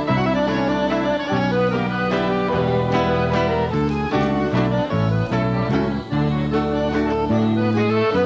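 Instrumental waltz recording led by an accordion with a small band: sustained chords over a bass line that steps to a new note every half second or so.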